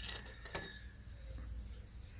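Faint scraping and small clicks of a metal oil catch can's threaded canister being unscrewed by hand.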